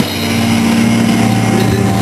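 A live rock band's distorted electric guitar and bass holding one sustained chord that rings steadily, with little drumming under it.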